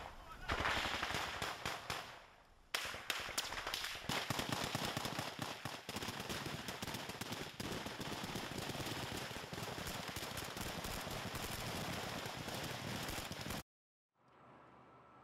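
Intense automatic small-arms gunfire in a firefight: rapid, dense shots with a short lull about two seconds in, then near-continuous firing until it cuts off suddenly near the end.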